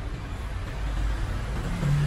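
Low rumble of a passing motor vehicle, with a steady low hum coming in near the end.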